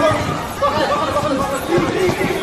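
People's voices talking over one another, with no clear words.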